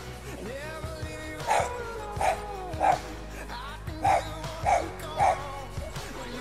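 A dog barking six times in short, loud single barks spaced about half a second to a second apart, over background music.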